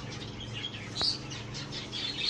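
Budgerigars giving a few short, faint chirps, with a sharp click about a second in, over a low steady hum.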